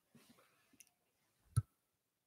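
Faint rustling, then a single sharp knock about one and a half seconds in, with a deep thud to it.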